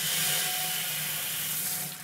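Water running from a garden hose into a stainless steel Brewha brew kettle, a steady hissing rush that dies away shortly before the end.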